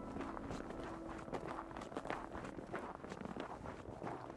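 A hiker's footsteps crunching on a packed-snow trail, a run of short, crisp, irregular steps.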